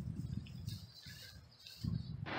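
Faint, gusty low rumble of wind on the microphone outdoors, with a brief faint high chirp a little under a second in.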